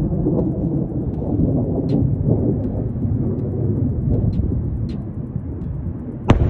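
A steady, loud, low rumbling noise with a few faint, irregular ticks.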